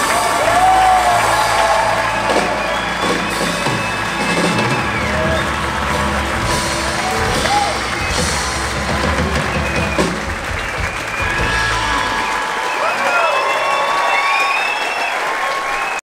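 A live rock band's closing chords on acoustic guitar, electric bass and drums, with an audience applauding and cheering. The bass and drums stop about twelve seconds in, leaving the applause and cheers.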